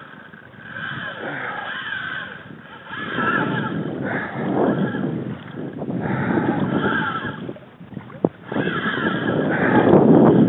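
Water splashing against a fishing kayak with wind on the microphone, growing louder toward the end. A wavering higher whine comes and goes, and there is one sharp click about eight seconds in.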